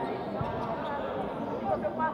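Thuds of a futsal ball being kicked and struck on the hard court, one about half a second in and a louder one near the end, over the steady chatter of spectators in a large sports hall.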